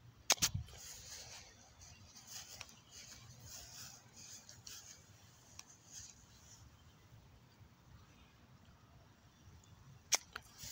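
A plastic toy golf club strikes a golf ball on grass with a sharp crack just under half a second in, followed by soft, irregular rustling of footsteps through the grass.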